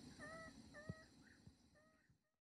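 Meerkat contact calls: short pitched chirps repeated about twice a second, faint and fading toward the end.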